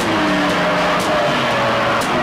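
Loud electronic music from analog modular and keyboard synthesizers: several sustained tones layered together, sliding slowly in pitch, with a sharp tick about a second in.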